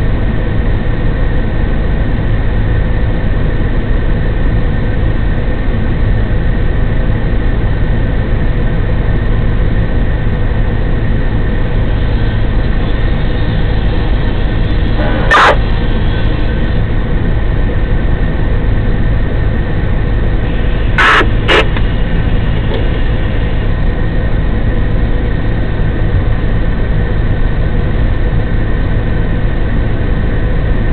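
Steady heavy engine drone from the fire engine's diesel running its pump to supply the charged hose line. Short sharp clicks cut in about halfway through and twice in quick succession about two-thirds of the way through.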